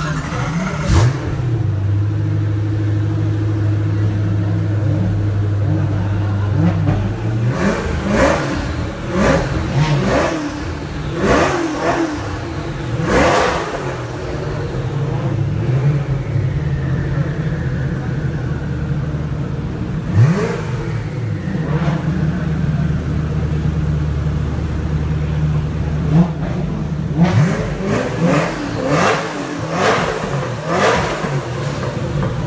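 Koenigsegg Agera RS Naraya's twin-turbo V8 idling with a steady low note, revved in short sharp blips: one about a second in, a run of several around the middle, a couple later on, and a quick cluster near the end.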